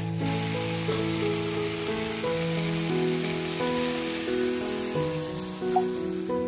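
Spiced curry pieces sizzling in hot oil in an iron wok as they are stirred with a metal spatula, a steady hiss, under background music of held, slowly changing notes.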